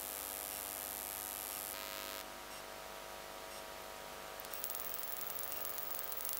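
Faint steady hiss with an electrical hum of several steady tones, and light crackling ticks from about four seconds in.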